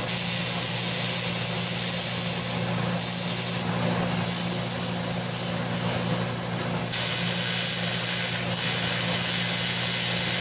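Electric arc welding aluminum tubing onto an aluminum radiator: a steady hiss with a low, even hum underneath, unbroken throughout.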